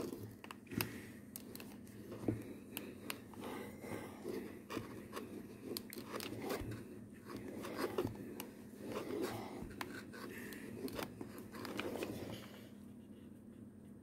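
Steam iron sliding and pressing over a crocheted motif on a cloth ironing pad: soft scraping and rubbing with small knocks, stopping about a second before the end.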